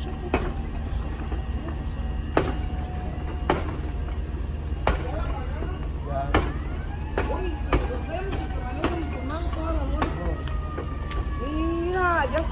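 Steady low engine drone from fire apparatus running at a house fire, with sharp cracks about every second from the burning roof. Voices join in from about halfway through.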